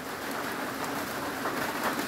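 Steady typhoon rain, heard from under a corrugated metal roof.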